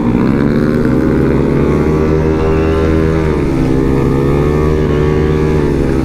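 Honda Vario scooter's single-cylinder engine running hard at highway speed, about 84 to 108 km/h, with wind noise on the microphone. The engine note holds high, dips briefly a little past halfway, then climbs again.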